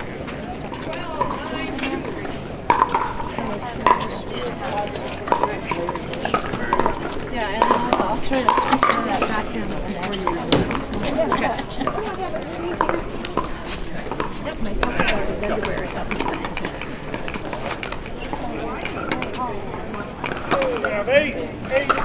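Murmur of voices talking, with scattered sharp pops of pickleball paddles hitting plastic balls on neighbouring courts.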